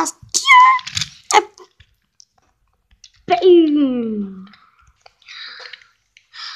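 A child's voice making wordless vocal sounds: a few short bursts in the first second and a half, then a long cry falling steadily in pitch, lasting about a second from about three seconds in. A soft breathy hiss follows near the end.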